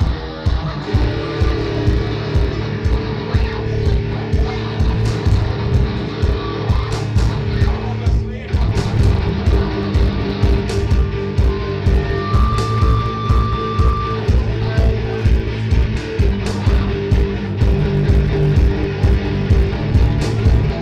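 Live instrumental stoner rock band playing: heavy electric guitar over drums keeping a steady beat.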